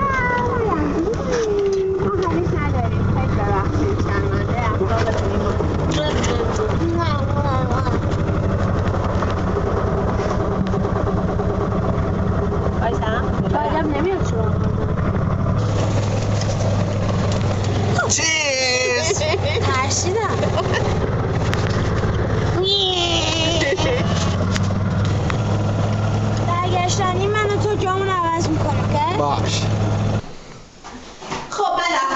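People's voices over a steady low drone that continues throughout.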